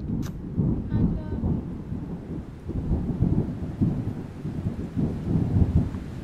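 Heavy rain with rolling thunder: a deep rumble that keeps swelling and fading beneath the even hiss of falling rain.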